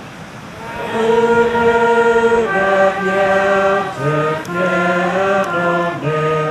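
Trumpet playing a slow melody in long held notes. It comes in about a second in, with a short break between phrases about four seconds in.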